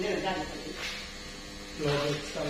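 A steady electrical hum, with short bits of a man's voice just after the start and near the end, and a brief rasping noise a little under a second in.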